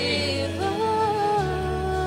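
Live praise band playing a song: a voice holds a long wordless note over strummed acoustic guitars and a steady bass line that steps to a new note about one and a half seconds in.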